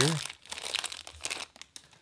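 The foil wrapper of a Magic: The Gathering draft booster pack crinkling and tearing as it is ripped open by hand. The crackling stops shortly before the end.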